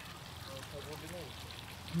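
Faint, steady patter of water falling onto a garden pond's surface.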